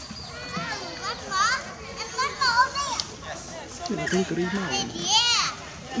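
High-pitched voices squealing in rising and falling glides, with an adult voice speaking briefly in the second half.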